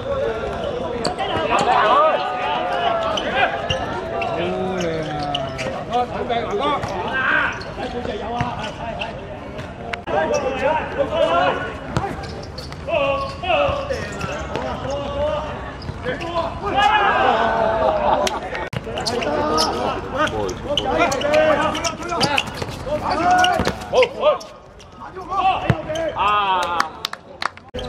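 Players and spectators calling out and chattering, mixed with sharp thuds of a football being kicked and bouncing on a hard court surface.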